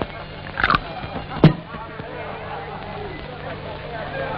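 A few sharp knocks of a glass bottle and drinking glass on a bar counter as a drink is poured, the loudest about a second and a half in, over the steady hum and hiss of an old film soundtrack.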